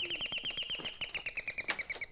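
Electronic doorbell ringing with one high, rapid trill, about two and a half seconds long, that slowly drops in pitch.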